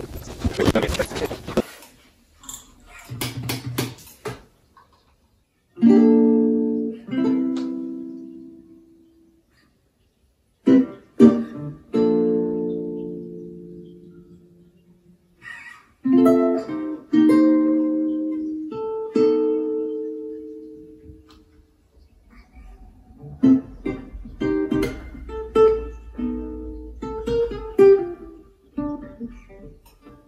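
Acoustic guitar played solo: after a short noisy stretch and a few clicks in the first seconds, slow chords are picked and left to ring out and fade, with pauses between them, and the playing gets busier from about two thirds of the way in.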